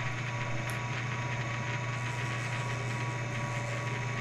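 Shoptask XMTC Gold lathe-mill combo running with its four-jaw chuck spinning. It gives a steady motor hum with a few faint steady higher tones.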